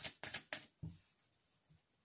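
A few quick, light clicks and a soft thump in the first second from tarot cards being handled, then near silence.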